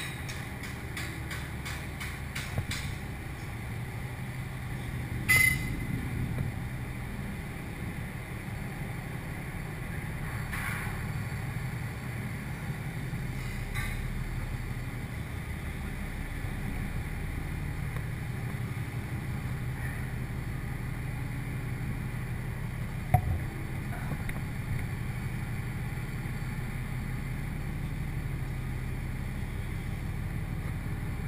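Steady low machinery drone of a drilling rig heard during a ride up the derrick on a manrider hoist. A quick run of ticks comes in the first few seconds, and a few sharp metallic knocks follow, the loudest about five and twenty-three seconds in.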